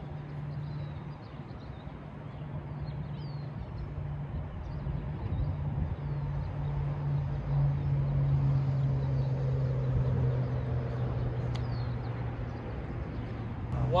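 A steady low engine hum, rising a little in level about halfway through, over outdoor background noise, with a few faint bird chirps.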